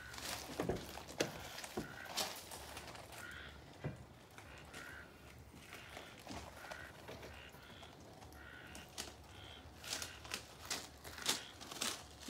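Quiet clicks and knocks from a pickup's door and cab as its lights are switched on, followed by a faint short beep repeating about every two-thirds of a second.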